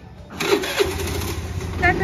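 Hero Maestro scooter's engine starting about half a second in, catching with a couple of knocks and settling into a steady idle.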